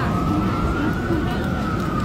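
An emergency-vehicle siren wailing in one slow rise and fall of pitch, over steady street noise.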